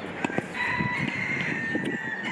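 A rooster crowing: one long, held call of about a second and a half. Just before it come two quick knocks of a tennis ball being hit.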